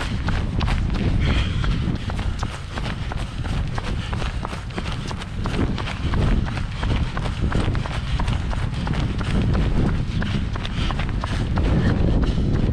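A runner's footfalls striking in a steady rhythm, with hard breathing through a ski mask and wind rumbling on a handheld camera's microphone.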